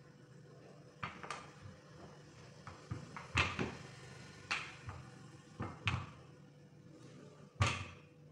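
Rolling pin knocking and thumping against a silicone baking mat on a tabletop while bread dough is rolled flat, about eight irregular knocks, the loudest near the end.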